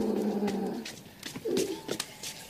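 A dog vocalizing low in the throat: one sound about a second long, then a shorter one about a second and a half in.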